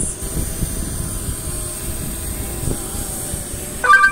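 Hubsan Zino Mini Pro quadcopter hovering close by, a steady propeller hum under irregular low wind rumble on the microphone. A short electronic beep sounds just before the end, as the app starts video recording.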